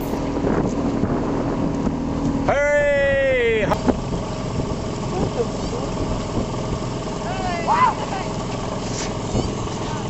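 Steady low hum of a small boat's outboard motor. Over it, a person gives a long drawn-out call, falling in pitch, about two and a half seconds in, and a shorter call follows near eight seconds.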